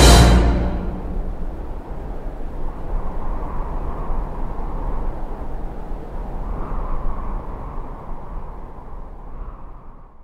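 A loud, dark trailer music chord cuts off about a second in, leaving a low rumbling drone that slowly fades out near the end.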